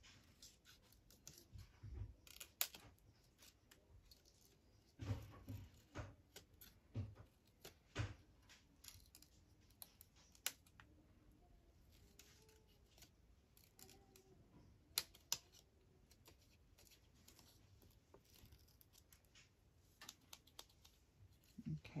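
Small scissors snipping through paper: faint, short snips at an irregular pace, in little clusters with pauses between.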